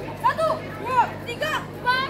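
Several short, high-pitched shouts from young voices in quick succession, each call rising and falling in pitch, over a steady low hum.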